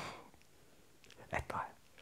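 A man's breathy laughter: a hushed exhale fading out at the start, then quiet, then a brief chuckle about a second and a half in.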